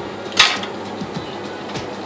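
Ostrich steak sizzling in hot oil in a frying pan: a steady sizzle with one louder spit about half a second in.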